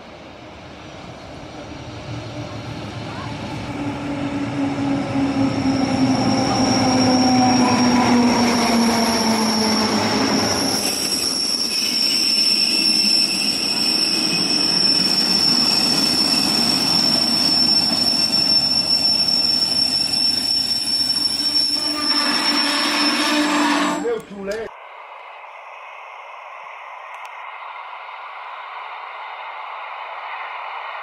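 Rhaetian Railway Ge 6/6 II electric locomotive and its passenger coaches passing close by. It grows louder on the approach and its motor hum falls in pitch as it goes past, while the wheels give a steady high squeal on the curve. About 24 seconds in, the sound cuts abruptly to the much quieter, duller running of a distant train.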